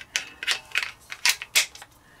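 A steel 15-round magazine sliding into the grip of a Springfield Armory Hellcat pistol and locking into place: a run of sharp clicks and scrapes of metal on polymer.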